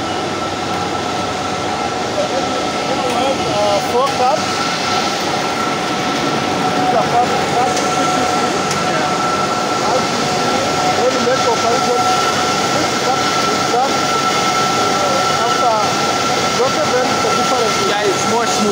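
Tea-leaf crushing machinery running steadily, a loud continuous mechanical noise with a high, even whine riding over it.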